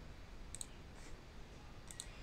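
Faint computer mouse clicks: a pair about half a second in, a softer click at about a second, and another pair near the end, over faint room noise.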